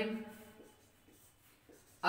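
A few faint strokes of a marker pen on a whiteboard. The end of a spoken word is heard at the very start.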